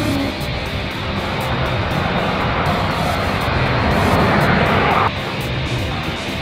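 A lunar-lander rocket engine firing during liftoff: a rushing noise that grows louder and cuts off suddenly about five seconds in. It is mixed with rock music with electric guitar.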